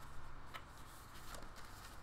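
Faint handling of a photo book's paper pages as they are turned, two soft ticks over a low steady room hum.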